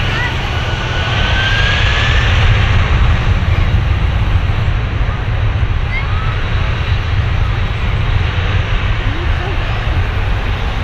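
Boeing 747-400's four turbofan engines running at high power on the runway: a loud, deep rumble that swells slightly about two seconds in, with a faint rising whine near the start.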